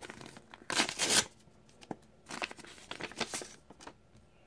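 A paper envelope being torn open by hand: one loud rip about a second in, then two shorter bursts of tearing and crinkling paper.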